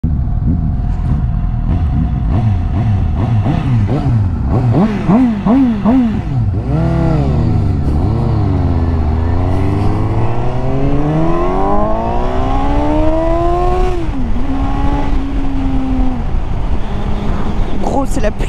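Kawasaki Z800's inline-four engine pulling away through the gears: several quick rises and falls in revs, then one long climb in revs that drops at an upshift, followed by steadier running.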